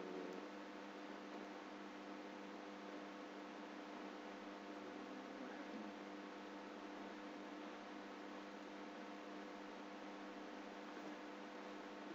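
Faint, steady electrical hum of several held tones over a soft hiss: the recording's background noise, with no other sound standing out.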